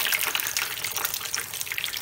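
Chicken-and-potato shami kababs shallow-frying in hot oil, with a steady sizzle and crackle that is a little louder at first.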